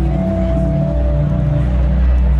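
Live rock band playing loudly: a deep bass line stepping between notes under a held higher note.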